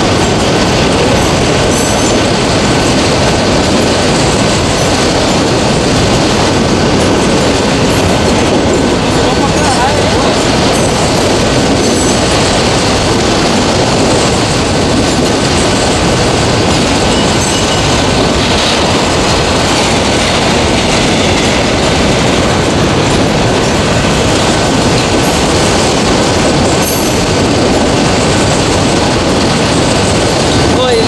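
A freight train's covered hopper cars rolling past, loud and steady, with steel wheels running over the rails. A thin, steady high-pitched tone sits over the rolling noise.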